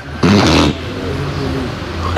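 A man's short, breathy vocal sound, followed by a low, steady hum lasting over a second.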